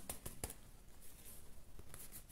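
Faint handling of a large oracle card deck as a card is drawn from it: one sharp click about half a second in, then soft rustling and light ticks.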